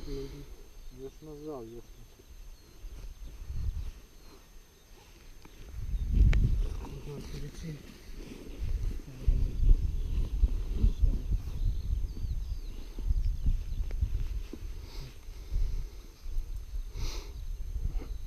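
Wind buffeting the microphone in gusts: an uneven low rumble that swells about six seconds in and keeps rising and falling.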